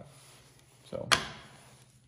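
A single sharp knock about a second in, with a short ringing decay: a hard object struck or set down once.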